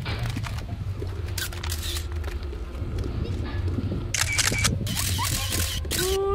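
Steady low rumble of wind and handling on a phone's microphone, with faint children's voices calling now and then and a few brief clicks or rustles.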